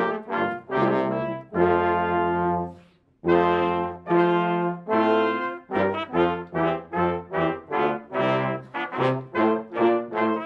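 Brass quintet playing processional music: chords held, one dying away to a brief pause about three seconds in, then a run of short, separate notes, two or three a second.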